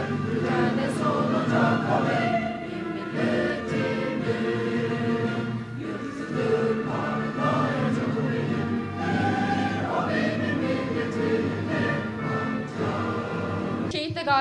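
A choir singing with orchestral accompaniment, sustained and steady.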